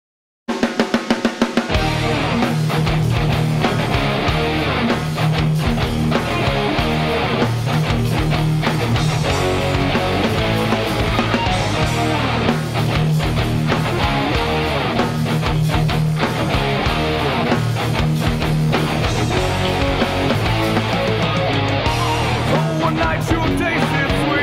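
Yamaha Revstar RS720BX electric guitar played along with a rock backing track with drums. A quick run of short hits opens the music about half a second in, and the full band comes in after a second or so.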